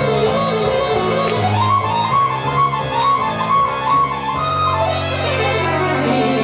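Live rock band playing an instrumental passage: sustained low keyboard and bass notes shift every second or so under a repeating melodic figure on guitar or keyboard.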